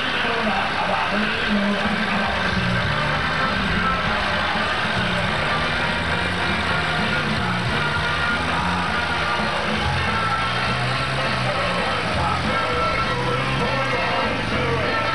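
Tractor engine running as it tows a parade float slowly past, mixed with music with a stepping bass line and crowd voices.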